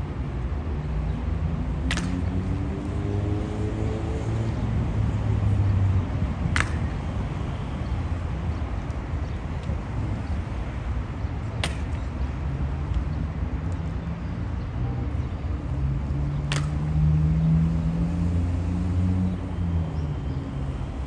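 Evzone guards' hobnailed shoes striking the marble pavement in four sharp single stamps, one about every five seconds, over a steady rumble of city traffic with vehicle engines rising in pitch as they pull away.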